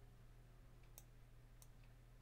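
Near silence with a low steady hum and two faint computer mouse clicks, about one second and a second and a half in.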